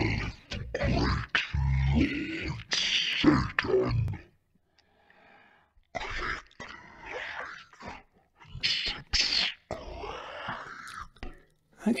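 A man's recorded voice played back at half speed and pitched down an octave, coming out deep, drawn-out and growling. It speaks the two dialogue lines "All hail the great Lord Satan" and "Click like and subscribe", with a short pause between them about four to six seconds in.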